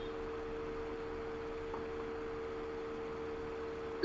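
Faint steady background hum with a couple of constant tones and a light even hiss, unchanging throughout; no one speaks.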